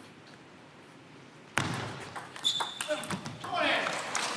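Quiet for about a second and a half, then a short table tennis rally: the plastic ball cracking off rubber paddles and bouncing on the table in quick knocks. Voices rise near the end.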